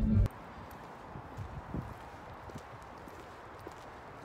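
Background music cuts off about a quarter second in; then footsteps on a concrete sidewalk, irregular light knocks over a faint outdoor hiss.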